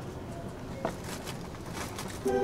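Quiet interior ambience of a stopped JR East E233-series electric commuter car, a steady low background hum with one short click about a second in.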